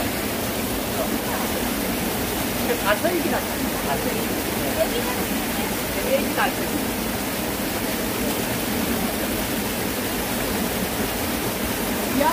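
Shallow rocky stream running over stones: a steady rush of water throughout, with brief voices about three and six seconds in.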